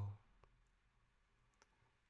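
Near silence: room tone, after the tail of a soft spoken word at the very start. Two faint clicks come about half a second in and about a second and a half in.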